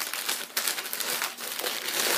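Paper crinkling and rustling in irregular crackles as a mug is unwrapped from its protective paper wrapping.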